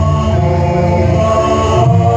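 Javanese gamelan music with voices chanting in long held notes, accompanying a jaranan dance.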